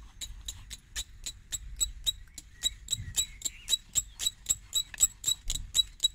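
Bow drill being worked: the wooden spindle squeaks rhythmically with each stroke of the bow, about five squeaks a second, getting a little louder toward the end.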